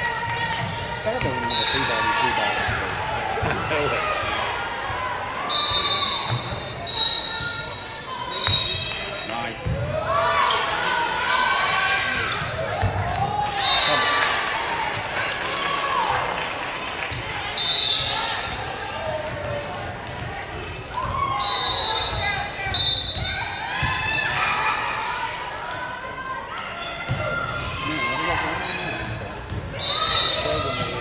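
Gymnasium sounds of a high-school volleyball rally on a hardwood court: ball contacts, short high squeaks several times, and players and spectators calling out and cheering in the echoing hall, busiest in the middle when a point is won.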